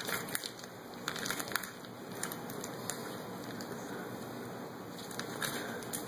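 Faint crinkling and crackling of a plastic-wrapped package of bacon being rolled up by hand, with scattered crackles in the first second and a half and a few more near the end.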